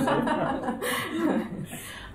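Light laughter and chuckling from a few people, dying away near the end.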